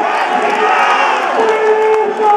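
Football crowd in the stand cheering a goal: several men yelling long held shouts over one another, loud throughout.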